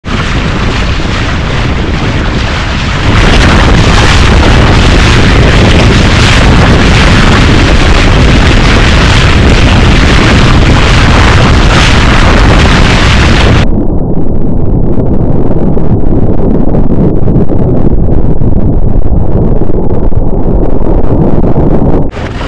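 Heavy wind buffeting the microphone over the rush of water along a Montgomery 17 sailboat's hull as it sails at speed, loud and nearly constant. About three seconds in it grows louder, and past the middle the hiss suddenly drops away, leaving a low rumble.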